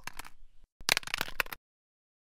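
A quick rattling clatter of sharp clicks, lasting under a second about a second in: a metal rifle dropping onto a hard floor.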